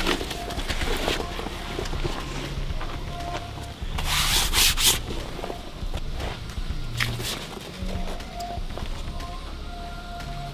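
Backpack fabric rubbing and rustling as the armored backpack is handled and lifted, with a louder scrape about four seconds in. Faint background music runs underneath.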